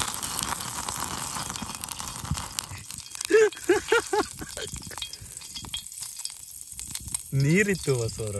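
Steady hiss of flames flaring out of a pot on a portable butane-canister camping stove. The hiss cuts off suddenly about three seconds in as the burner is shut off, followed by a few light clicks.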